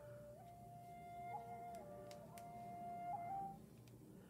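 Faint background music: a slow melody of long held notes on a flute-like instrument, stepping between a few pitches, with a couple of light clicks near the middle.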